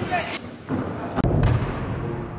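Deep, dull thuds of bodies landing on gym crash mats, with a couple of sharp knocks about a second in.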